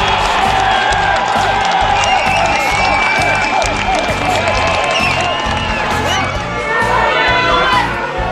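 Football crowd cheering and shouting at a goal, with many voices whooping at once, over background music with a steady beat.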